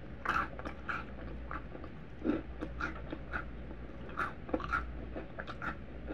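Close-miked biting and chewing of a Cap'n Crunch pancake, with irregular crisp crunches as the mouthful is chewed.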